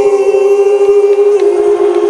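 Live singing with the band stopped: one long held note that drops slightly in pitch about one and a half seconds in.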